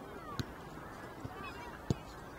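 Two sharp thuds of a football being kicked, about a second and a half apart, the second the louder, over faint distant shouts from the players.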